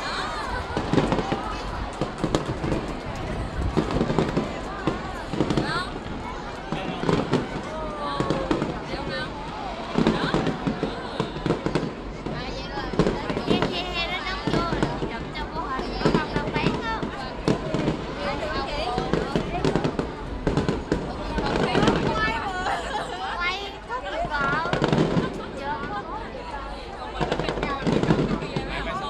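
Aerial fireworks bursting overhead, with a bang every second or two throughout.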